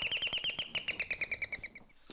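Electronic doorbell ringing: a rapid, bird-like trill that slides down in pitch and stops shortly before the end.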